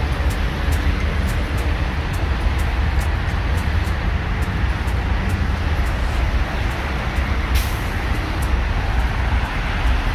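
Steady outdoor background rumble of road traffic, heavy in the bass, with faint regular ticks of footsteps from someone walking. A short hiss comes about seven and a half seconds in.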